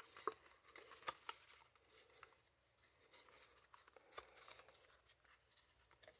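Faint rustling and a few light clicks of a clear acetate sheet and cardstock being handled and pressed together by hand.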